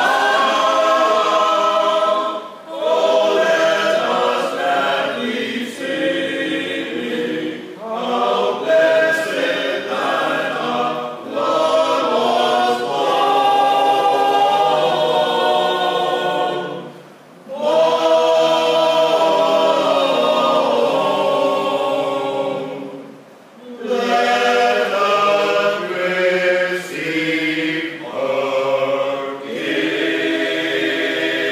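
A small male vocal ensemble of six men singing a carol unaccompanied in several-part harmony, with brief breaks between phrases about 2.5, 17 and 23 seconds in.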